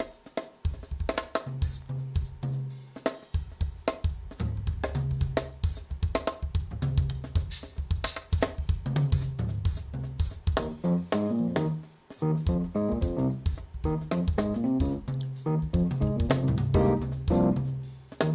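Live drum kit and keyboard playing together: busy snare, hi-hat, cymbal and kick strokes over low sustained keyboard bass notes, with keyboard chords and melody growing busier about ten seconds in.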